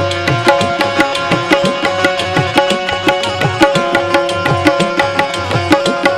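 Instrumental qawwali tune: an Indian keyed banjo (bulbul tarang) plays the plucked melody over tabla keeping a fast, steady rhythm, with occasional deep bass-drum strokes that bend in pitch.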